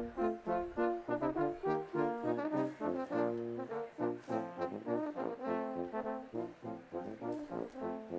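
Brass ensemble playing a lively piece, several brass instruments sounding together in chords with quickly changing notes, as music for the graduates filing out.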